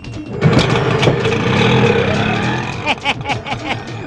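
Auto-rickshaw engine running loudly, coming in about half a second in and dying away near three seconds, as on a film soundtrack.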